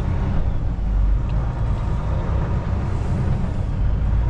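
Kenworth T680 semi truck's diesel engine running with a steady low rumble, heard inside the cab as the truck moves off at low speed.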